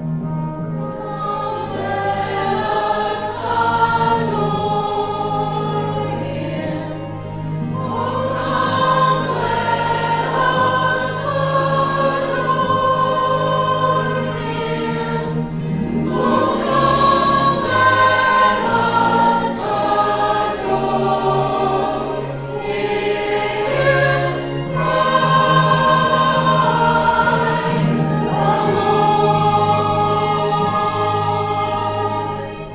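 Mixed church choir of men's and women's voices singing together, holding long sustained notes that move through the melody.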